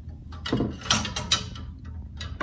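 Wooden clothes hangers sliding and clacking along a metal closet rail, a few sharp clatters about half a second apart.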